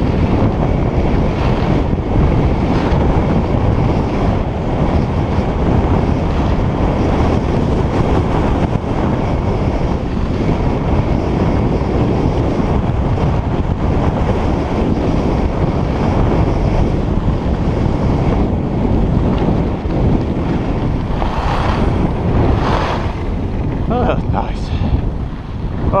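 Wind buffeting a GoPro Hero3+ microphone while skiing fast down a groomed run, with skis running over the snow. The rush eases in the last couple of seconds as the skier slows.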